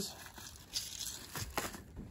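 Plastic packaging crinkling and rustling in a few short, irregular crackles as packets of sewing pins are handled.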